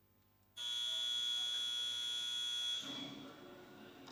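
A loud, steady electric buzz that starts suddenly about half a second in, holds for about two seconds, then stops and dies away in the hall.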